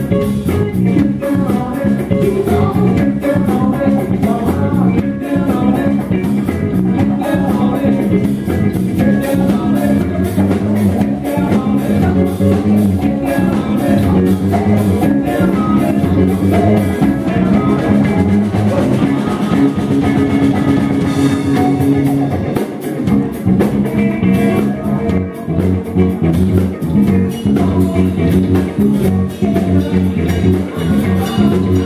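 Live band playing: electric guitars, bass guitar and drum kit, with a male lead vocal singing into the microphone. The loudness dips briefly a little past two-thirds of the way through.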